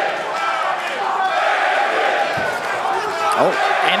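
Arena crowd noise: a dense, steady wash of audience voices with scattered shouts. A single dull thud sounds about two and a half seconds in.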